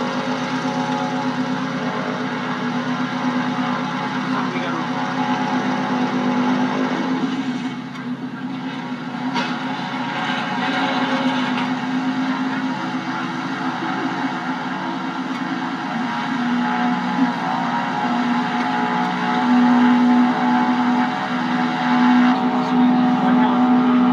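Light piston-engined propeller aircraft, RAF Grob Tutors with four-cylinder Lycoming engines, running on the ground with a steady, pitched drone. The drone dips briefly about a third of the way in and grows louder in the second half.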